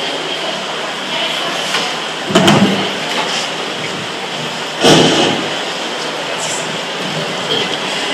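A handheld microphone being handled as it is passed from one person to another, giving two loud bumps, about two and a half and five seconds in, over steady background noise.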